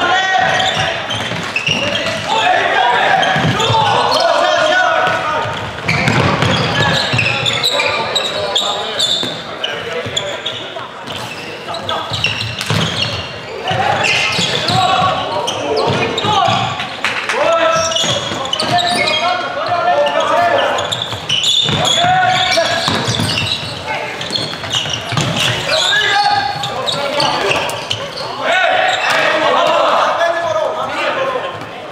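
Floorball play in a reverberant sports hall: voices of players and spectators calling out, with frequent sharp clacks of sticks and the plastic ball on the floor and boards.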